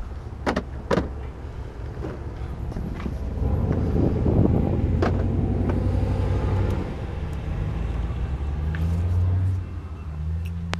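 Pickup truck engine idling with a steady low hum, with two knocks in the first second as items are set down in the cab and some handling noise around four to five seconds in.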